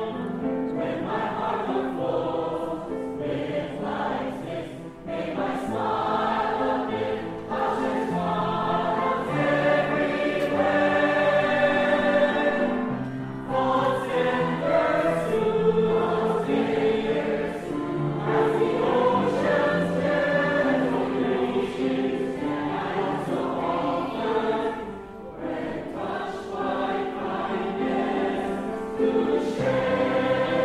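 A choir singing, holding long notes in phrases separated by short breaks.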